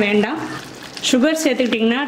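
Thick chana masala gravy bubbling as it boils in a steel pan. A woman's voice is heard over it at the very start and again from about a second in, with a short lull between where mainly the bubbling is heard.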